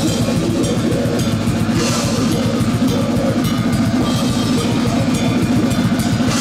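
Death metal band playing live: distorted electric guitars over fast, dense drumming with bass drum and cymbals, loud and continuous.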